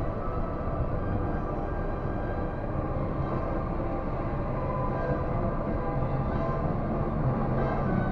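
Steady running noise inside a Disney Resort Line monorail car, with music coming in over it and growing stronger toward the end.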